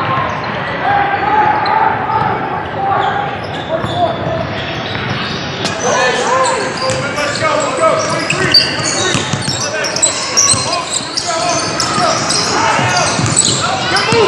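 Indoor basketball game on a hardwood court: sneakers squeak in short bursts, a ball bounces, and players and onlookers call out, all echoing in the gym. The squeaks and knocks grow busier about halfway through.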